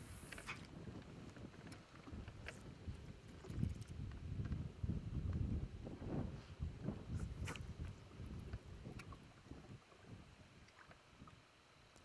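Wind buffeting the microphone on a boat, with small waves lapping against the hull and scattered light clicks; the rumble eases near the end.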